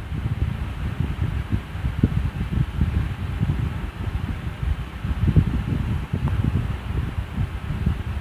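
Air buffeting the microphone: an irregular, fluttering low rumble with a faint steady hiss above it.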